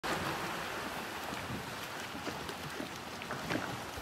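Open-water ambience: a steady hiss of wind on the microphone and water around the boat, with a few faint short sounds in the distance.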